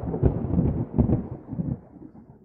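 A deep, rumbling intro sound effect with several heavy booms, fading out toward the end.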